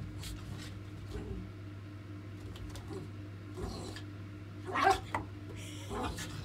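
A small white dog romping and scrabbling on a fabric-covered sofa, with one short, louder noise about five seconds in, over a steady low hum.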